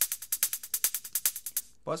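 Electronic drum loop playing back, mostly a fast, even run of crisp hi-hat ticks about ten a second, with a short room reverb on it. It stops just before the end, and a man's voice follows.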